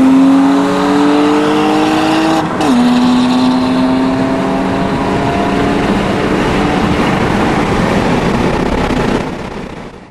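Infiniti G35 coupe's 3.5-litre V6 at full acceleration, heard from inside the cabin: the engine note climbs, drops sharply at an upshift about two and a half seconds in, then climbs slowly again in the next gear. The sound fades near the end.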